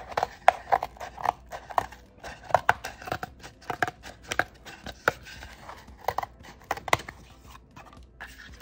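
Scissors cutting through cardboard along a curved line: a run of irregular, sharp snips and crunches, a few each second.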